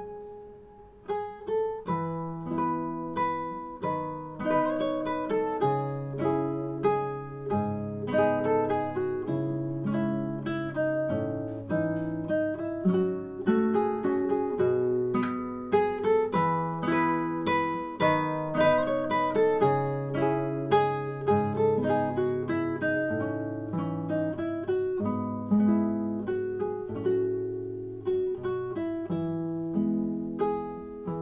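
Solo classical guitar fingerpicked, playing a slow melody over bass notes, each note plucked and ringing out. A brief lull at the start, then the notes pick up again about a second in.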